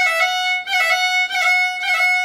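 Solo fiddle demonstrating a half roll: one held bowed note broken again and again by a quick four-note grace-note flick (two, one, open, one), about every half second.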